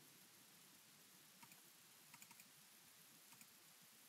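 Near silence with a few faint computer-keyboard key taps: one about a second and a half in, a quick little cluster just after two seconds, and a couple more late on.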